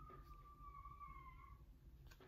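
A young child's voice calling faintly from a distance: one long held call that sinks slightly in pitch and fades out near the end, the child calling out on waking up.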